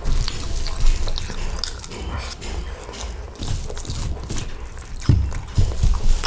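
A person chewing a mouthful of masala dosa, with irregular small clicks and soft thumps.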